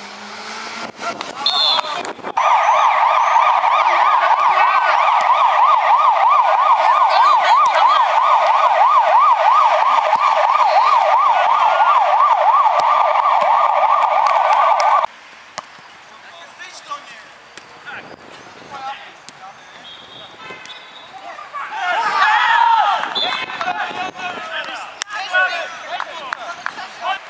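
Siren-like electronic warble, a tone sweeping rapidly up and down over and over like a police yelp, loud and steady for about thirteen seconds before cutting off abruptly. Shorter bursts of voices follow near the end.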